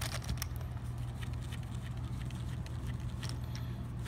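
Stacks of poker chips clicking and rattling irregularly against each other and the cardboard dividers of a paper chip box as it is handled. The rattle comes from a loose fit: the chips shift in their compartments. A steady low hum runs underneath.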